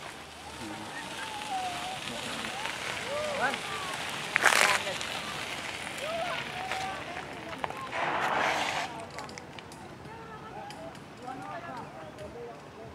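Voices of people talking at a distance. About four and a half seconds in there is a short, loud rush of noise, and a softer one follows near eight seconds.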